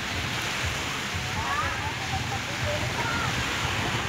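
Small waves washing onto a sandy beach: a steady, even hiss of surf.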